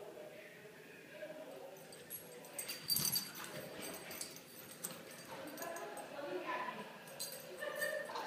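West Highland white terrier and Havanese puppies playing rough together, with quick clicking and scrabbling of paws around three seconds in and again near the end, and short high vocal yips in the later seconds.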